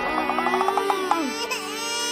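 A cartoon child character crying over background music: a quick run of stuttering sobs, then a long drawn-out wail.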